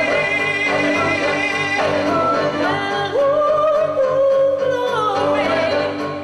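Live choir singing a gospel spiritual: a woman's solo voice holds long notes with vibrato over sustained lower backing voices, with a new held note starting about three seconds in.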